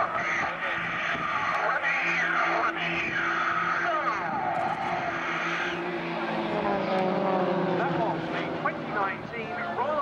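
Piston engines of Extra 300L aerobatic propeller planes running at display power overhead, a steady drone for the first six seconds; then a plane passes and its engine note falls in pitch.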